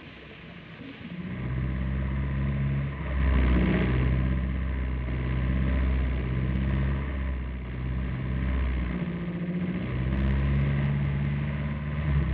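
Car engine running, coming in about a second in and revving up and down several times.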